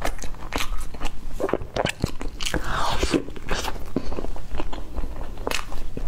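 Close-miked chewing and biting of a soft bready pastry: irregular sharp mouth clicks, with a brief rustling crunch about halfway through.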